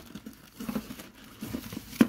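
Irregular rustling and crinkling of packing paper and wrapped items being handled by hand in a subscription box.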